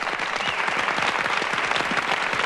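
A crowd clapping: dense, steady applause.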